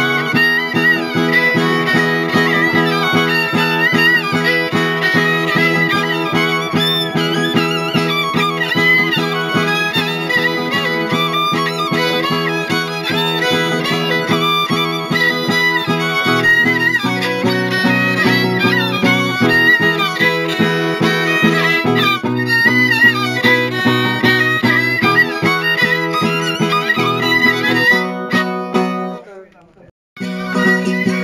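Traditional Oaș folk music: a ceteră (fiddle) plays a lively melody over a steadily strummed zongură. The tune stops briefly near the end.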